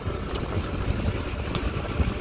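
Car running at low speed, a steady low rumble with faint rattles, heard from inside the vehicle.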